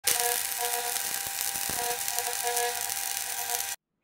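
A small motor running with a steady, loud hiss and faint whining tones, cutting off suddenly near the end.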